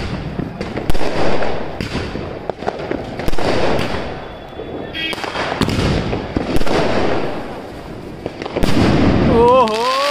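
A multi-shot aerial firework tube firing: a series of sharp launch bangs about once a second, each shot rising and bursting overhead. A wavering, whistle-like tone comes in near the end.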